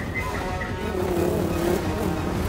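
Film soundtrack of a chase: a loud, engine-like rushing drone of a giant bee's flight, mixed with the orchestral score.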